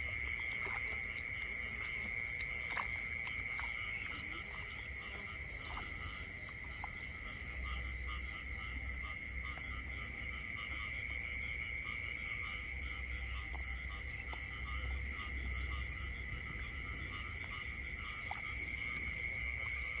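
Night chorus of frogs and insects in a flooded rice paddy: a steady high trill throughout, with a fainter, higher ticking call of about two pulses a second that pauses for a couple of seconds halfway.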